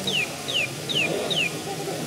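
Meccano mechanical bird automaton chirping: a quick run of short whistled chirps, each falling in pitch, about two to three a second, which stop about a second and a half in. Background voices murmur underneath.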